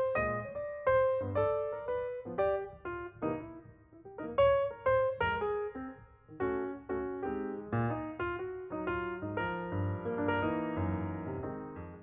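Background piano music: a gentle melody of single struck notes, each fading away, with fuller overlapping chords near the end.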